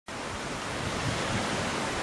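Strong wind blowing as a steady, even rush of noise.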